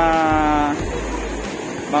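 A man's voice holding one long drawn-out hesitation vowel, the tail of "mga...", for most of the first second, then about a second of surf and wind noise on the microphone before talk resumes.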